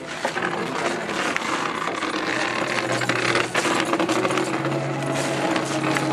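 Dense metallic rattling and clicking from the armour and gear of a group of costumed Roman soldiers moving on foot, with footsteps mixed in. A low steady hum comes in about halfway through.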